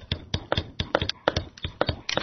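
Stylus pen tapping and clicking on a tablet PC screen while handwriting: a quick, irregular run of short clicks, several a second.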